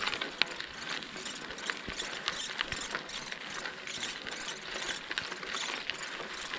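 Bicycle freewheel hub ticking as the bike coasts, over the crunch of tyres rolling on a gravel logging road, with scattered sharp clicks throughout.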